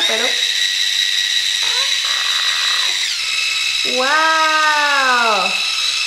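Rechargeable electric spin scrubber running unloaded, its brush head spinning in the air: a steady high-pitched motor whine that shifts lower about three seconds in.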